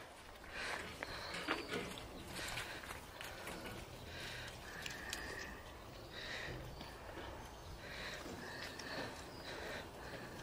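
Faint sounds of a flock of Valais Blacknose sheep milling close together in a muddy pen: shuffling hooves and sniffing, with soft scattered clicks. A few faint, short, high calls sound in the background about halfway through and again near the end.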